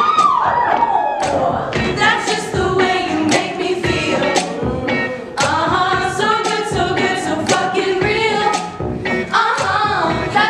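A group of women singing a pop song together over a steady beat.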